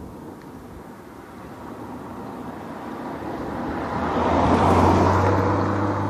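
A car approaching and passing close by on the road: tyre and engine noise swells to a peak about five seconds in and then eases, with a low engine hum coming in near the peak and running on.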